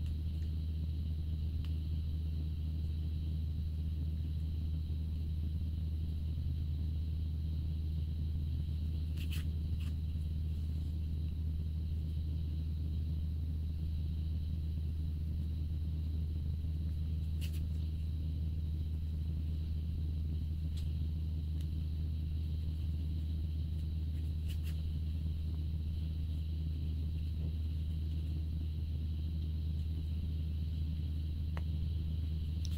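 A steady low hum with a faint high-pitched whine above it, unchanging throughout, with a few faint clicks scattered through it.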